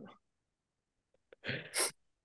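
A man's laughter: the tail of a laugh, about a second of silence, then a short breathy burst of laughing about a second and a half in.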